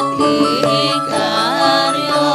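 A Javanese campursari ensemble playing a gending. A wavering, ornamented vocal line is sung over steady held instrumental notes and occasional drum strokes.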